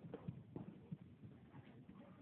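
Faint, dull thuds of a horse's hooves on the arena footing, several a second in an uneven rhythm.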